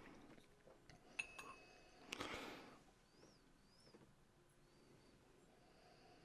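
Near silence, broken about a second in by a faint clink of a glass tumbler with a short ring, then a brief soft sniff at the glass.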